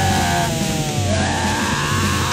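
Anarcho-punk band playing loud, distorted, noisy hardcore punk, with long pitched tones sliding down in pitch over a dense, steady wall of sound.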